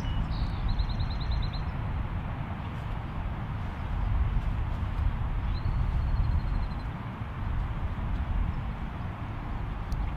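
Outdoor ambience: a steady low rumble and hiss, with a bird's short trill of repeated high chirps about a second in and a thin high whistled note around six seconds in.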